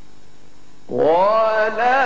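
A low steady hum, then about a second in a male Qur'an reciter starts a long, held melodic phrase of tajwid recitation, his voice sliding up into the note and wavering gently on it.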